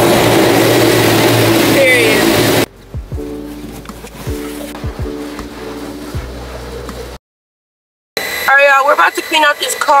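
Automatic car wash spraying water over the car, heard from inside the cabin as a loud steady rush that cuts off abruptly after about two and a half seconds. Quieter music follows, then a moment of silence and speech.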